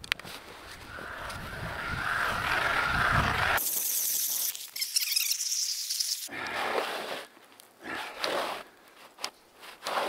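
Hand ice auger being cranked into lake ice, its blades scraping through the ice in uneven strokes over the second half. Before that comes a broad rushing noise that grows louder and cuts off suddenly, then a few seconds of thin high hiss.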